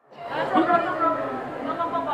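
Background chatter of several people talking at once, indistinct. It fades in after a brief dropout at the start.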